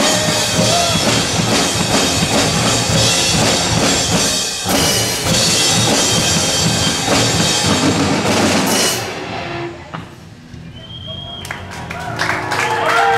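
Live rock band with electric guitars, bass and a drum kit playing loudly, the drums to the fore. About nine seconds in the music stops and the sound dies away, with the first claps right at the end.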